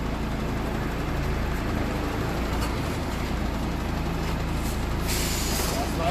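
Truck's diesel engine running low and steady as it reverses slowly up to the trailer, then a short hiss of compressed air near the end as the air brakes are applied to stop it.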